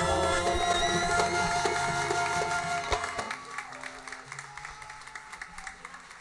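An Arabic ensemble with strings ends a song on a long held note, closing with a final accented hit about three seconds in. Applause follows at a lower level.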